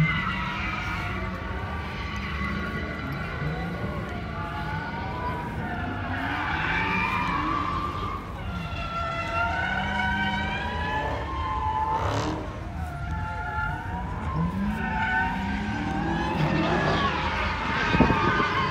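Car engines revving and accelerating, their pitch rising and falling over a steady low rumble, with a short sharp noise about two-thirds of the way through.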